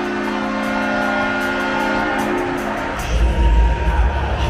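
Arena horn blast: a long, steady multi-note chord that cuts off about two and a half seconds in. A loud low rumble follows near the end.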